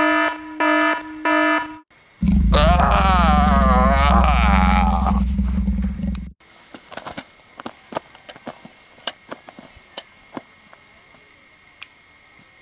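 Electronic toy ray-gun sound effects: a quick run of short beeps, then a loud warbling blast over a buzzing drone that lasts about four seconds and cuts off suddenly. Faint scattered clicks follow.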